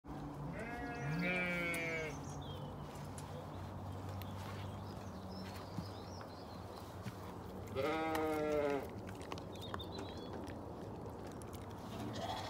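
Sheep bleating twice: a wavering call of about a second and a half near the start, and a shorter one about eight seconds in.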